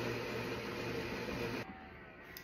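Built-in Bosch bean-to-cup coffee machine grinding beans with a steady hum, cutting off about 1.6 s in.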